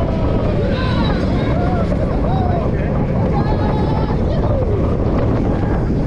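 Roller coaster train running along its track with a steady rumble, wind buffeting the microphone. Riders' voices call out over it at intervals.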